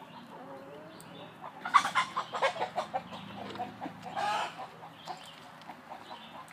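A hen clucking: a quick run of clucks from about one and a half to three seconds in, then one louder call about four seconds in.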